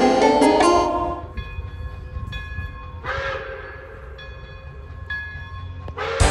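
Soundtrack music fades out about a second in. Then the steam whistle of Pere Marquette 1225, a 2-8-4 Berkshire steam locomotive, sounds in several separate blasts over a low steady rumble from the train, with a burst of hiss about three seconds in.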